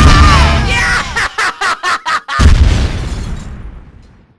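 A song's last held note ends in a loud, deep explosion boom. A rapid choppy stutter of about five hits follows, then a second boom about two and a half seconds in that fades away.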